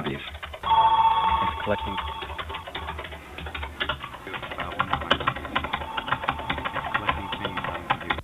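Computer-auralized sound sources in a virtual building: an electronic ringing tone at two pitches starting about a second in, over rapid clicking like keyboard typing, with the ringing tone coming back faintly near the end.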